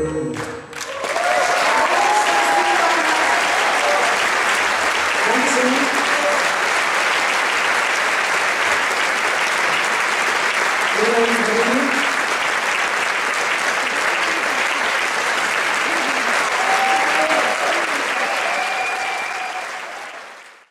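A band's final note cuts off and, about a second in, an audience breaks into steady applause with scattered cheers, which fades away near the end.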